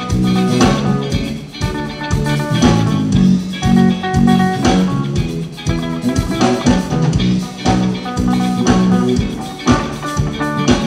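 Live rock band playing amplified through a PA: electric guitars and bass guitar over a steady, even beat, with no break.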